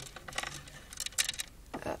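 Light clicks and clatter of small plastic doll toys being handled: a series of short, sharp ticks in the first second and a half.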